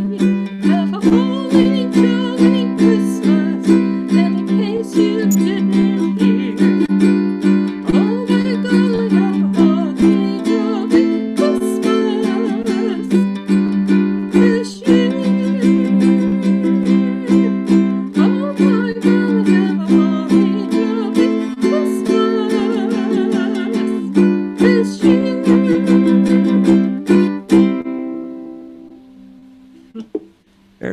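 Ukulele strumming chords in a steady rhythm, with a wavering melody line above; the final chord rings out and fades over the last couple of seconds.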